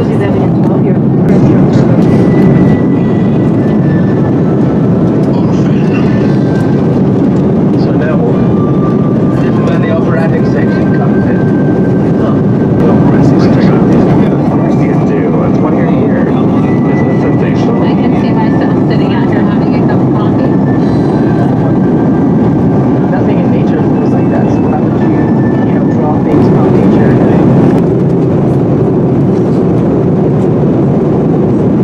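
Steady cabin noise inside an Airbus A330-200 airliner in flight: the constant rumble of engines and airflow, with faint voices of passengers in the background.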